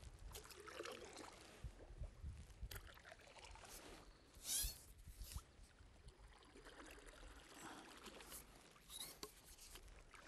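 Faint splashing and trickling of water from a stand-up paddle blade dipping into and pulling through a calm lake, with one brief, louder splash about halfway through.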